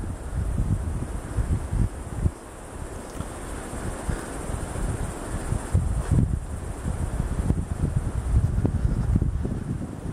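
Wind buffeting the camera microphone in uneven gusts, a low rumbling noise, with leaves rustling in the trees.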